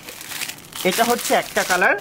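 Clear plastic packaging around folded cotton dress sets crinkling as the packets are handled and laid down, with a voice talking over it from about a second in.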